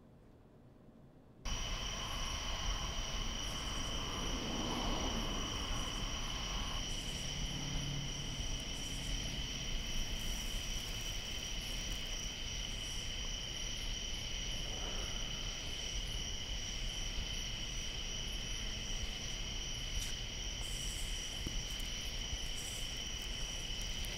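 Night-time cricket chorus: a steady high-pitched trill that comes in suddenly about a second and a half in, over a low steady rumble.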